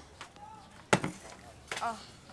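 A plate set down on a table with one sharp knock about a second in.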